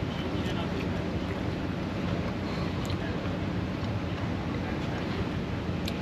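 Steady wind noise on the microphone.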